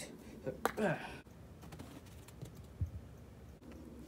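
Light clicks and taps of a toy putter and plastic golf ball on an artificial-turf putting mat, with a low thump near the three-second mark. A brief vocal sound comes about a second in.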